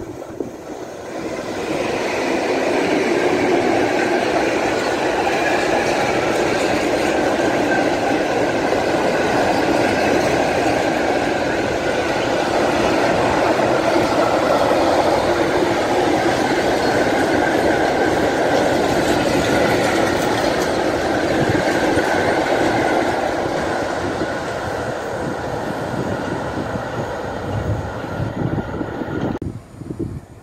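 Freight train of open wagons behind a TRAXX electric locomotive rolling past at speed: a steady rumble and rattle of wheels on the rails, with a steady high ringing tone above it. It swells in about a second and a half, eases a little in the last few seconds, then cuts off suddenly near the end.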